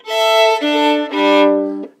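Fiddle bowed across open strings in pairs, three steady two-note chords stepping down in pitch, from the top strings to the bottom: checking that the fiddle is back in standard G D A E tuning.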